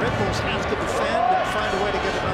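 Stadium crowd noise at a soccer match: a steady din of many voices, with individual shouts and calls rising out of it.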